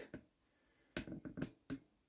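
A few faint, sharp clicks, four or five of them close together about a second in, with quiet around them.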